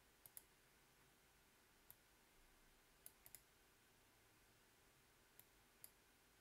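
Near silence broken by faint computer mouse clicks: a pair near the start, one about two seconds in, a quick cluster of three about three seconds in, and two more near the end.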